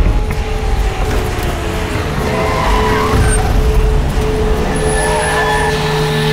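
Vehicle engines running with a deep rumble, mixed under a film's background music.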